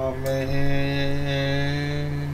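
A deep male voice holding a long, steady chant-like note, with a brief break and a change of vowel about half a second in.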